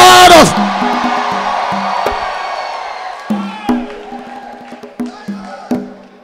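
The end of the preacher's loud drawn-out shout, then a congregation shouting and cheering in response, fading over the next few seconds, while a church keyboard plays short chord stabs again and again through it.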